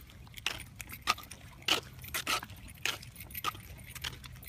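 Light metallic jingling in short clinks, a little under two a second, keeping a walking pace.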